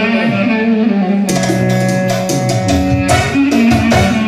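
Live band playing dance music: a held melody line, joined about a second in by a steady beat of drum strokes, roughly four a second.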